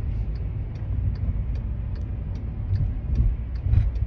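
Steady low rumble of a car being driven, heard from inside the cabin, with a faint regular ticking about two or three times a second.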